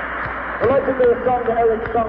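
A man's voice talking, muffled and indistinct, in a thin low-fidelity live recording, starting about half a second in over a steady hall noise.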